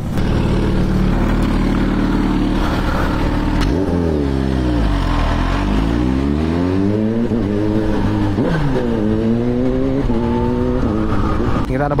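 Kawasaki Z H2's supercharged inline-four engine pulling away. It runs steadily for about four seconds, then its note falls and climbs several times as the bike accelerates and shifts through the gears.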